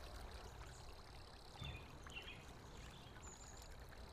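Near silence: a faint outdoor ambience bed with a few soft bird chirps, two short ones about a second and a half in and a thin high whistle near the end.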